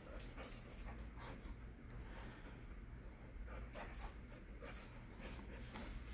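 Border collie panting faintly in short, irregular breaths.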